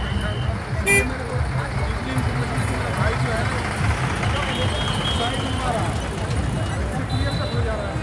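Street traffic running steadily, with people's voices in the background and a few short horn beeps, and a brief sharp sound about a second in.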